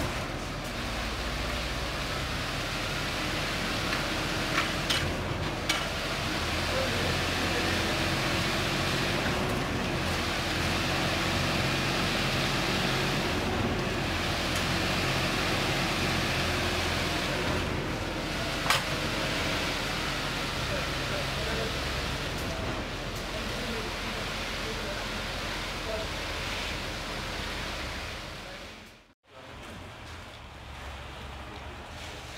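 Concrete pump running with a steady low drone while wet concrete is pumped through the delivery hose and raked out over the reinforcing mesh, with a few sharp clicks of tools. The sound cuts out briefly near the end.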